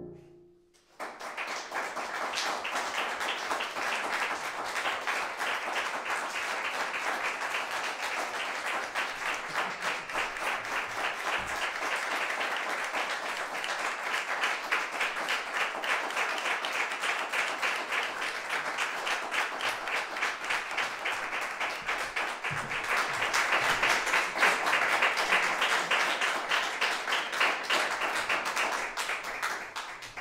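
Audience applauding. The clapping starts about a second in, grows louder near the end, then dies away.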